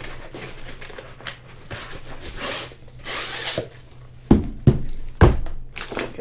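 A rolled diamond-painting canvas with its plastic cover being handled, rustling and crinkling, with a louder rustle about three seconds in. Near the end come three sharp knocks as the roll is set down or knocked on the table.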